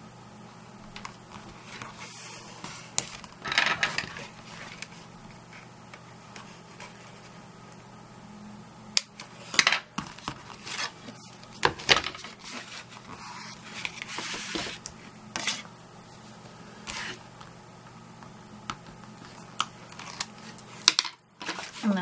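Card stock and double-sided craft tape being handled: tape pulled from the roll and laid along a card edge, its backing peeled off, and the card panels pressed down, giving paper rustles and scattered sharp clicks and taps.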